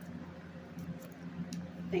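Tarot cards being handled and checked, giving a few faint light clicks over a steady low hum.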